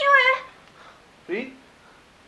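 A woman's high-pitched, wavering wailing cry, which breaks off about half a second in, followed by a shorter falling cry about a second later: lamenting a man found dead.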